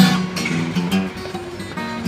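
Acoustic guitar played in a delta blues style without singing: a hard-struck chord at the start, then picked bass notes and short melodic runs.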